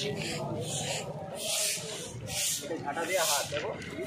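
Long-handled brooms sweeping an asphalt surface: repeated swishing strokes of the bristles scraping across the pavement, roughly one a second.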